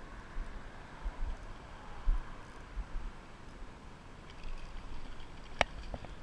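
Low, irregular rumbling bumps of wind and handling on a small action-camera microphone, with one sharp click shortly before the end.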